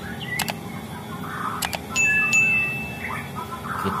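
Sound effects of an on-screen subscribe-button animation: two quick double clicks of a mouse, then a click and a bright bell chime that rings for about a second.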